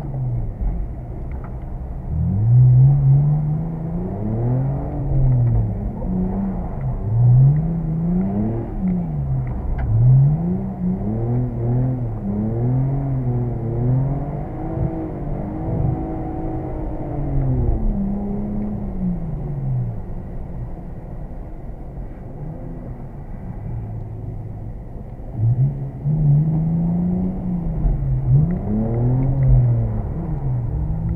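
BMW 330's straight-six engine heard from inside the cabin, revving up and falling back again and again while drifting. It settles to a steadier, lower note for a few seconds past the middle, then revs up and down again near the end.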